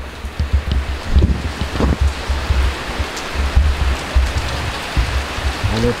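Heavy rain pouring down steadily outside an open door, with an uneven low rumble of wind gusting across the microphone.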